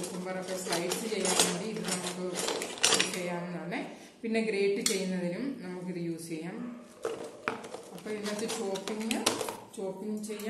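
Plastic and metal food processor discs and blade attachments clinking and clattering as they are handled and lifted out of a cardboard box, with a voice talking underneath.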